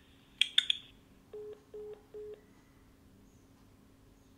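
Telephone line clicking and crackling as a call is hung up, followed by three short, evenly spaced beeps: the call-ended tone after the caller disconnects.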